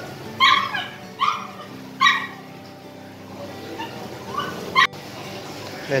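A dog barking in short yips: three loud ones in the first two seconds, then a few fainter ones near the end.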